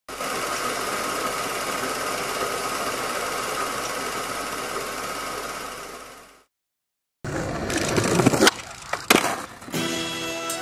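A steady mechanical whirring hiss that fades out. After a moment of silence comes skateboard wheels rolling on pavement, with sharp clacks of the board striking the ground, the loudest two about half a second apart near the end.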